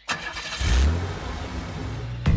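Car engine sound coming in abruptly, swelling in a low rev about half a second in, then running steadily.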